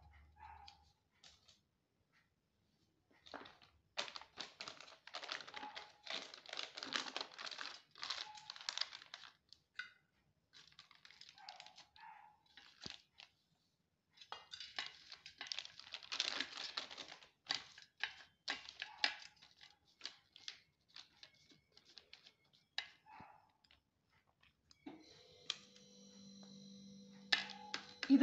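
Thin plastic milk-packet sheet crinkling and rustling as dough is pressed flat by hand inside it, in two spells of several seconds with scattered light clicks between. A faint steady hum starts near the end.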